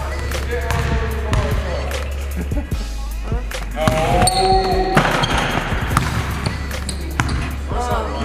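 Basketball bouncing on a hardwood gym floor, a string of sharp impacts, with music underneath.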